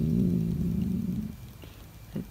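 A woman's drawn-out hesitation sound, a held 'euh', lasting just over a second and fading away, followed by quiet room tone.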